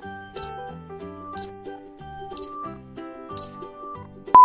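Light background music with a countdown timer sound effect ticking once a second, four sharp high ticks in all.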